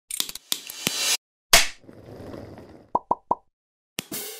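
Animated logo intro sound effects: a quick run of clicks, a sharp hit about one and a half seconds in that fades out, then three quick pops near the end.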